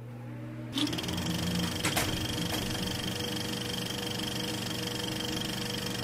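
A small machine running with a rapid mechanical clatter over a steady hum. It steps up sharply in loudness about a second in, with a sharp click near two seconds in.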